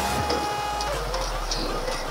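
Small motorcycle engine running while riding in city traffic, with a steady whine that stops about a second in and a low hum that fades near the end.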